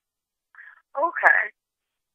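Speech only: a single brief spoken "OK", after about a second of silence.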